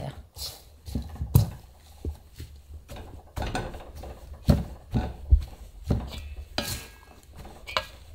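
Wire potato masher pressing down into hot cooked red adzuki beans in a stainless steel bowl, with irregular knocks of the metal masher against the bowl and soft crushing of the beans. The beans are being coarsely crushed while still hot, for a red bean crumb coating.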